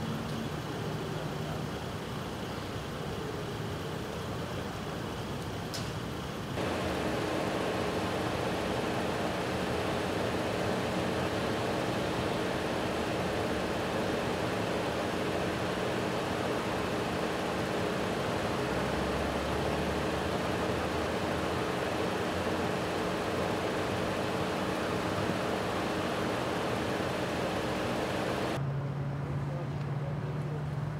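Steady road noise with a low hum of idling vehicle engines. It gets louder about six and a half seconds in, and its high hiss drops away shortly before the end.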